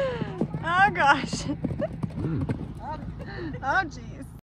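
A mustang's hoofbeats on sandy ground as it runs around the pen, with a person laughing over them.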